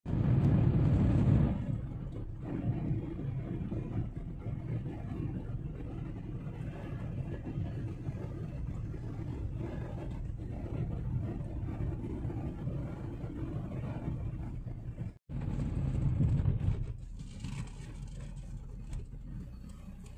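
Steady low rumble of road and engine noise inside a moving car's cabin. It is louder for about the first second and a half, and again for a second or so right after a brief cut to silence near 15 seconds.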